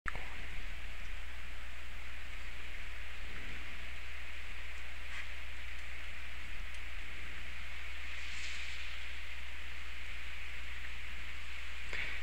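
Steady hiss with a low hum underneath: the recording's background noise, unchanging, with no other sound.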